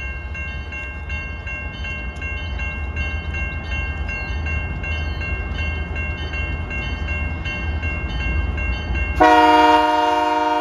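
Canadian National diesel freight locomotives approaching with a steady low rumble, over a steady high ringing tone. About nine seconds in, a locomotive horn starts a loud, sustained blast.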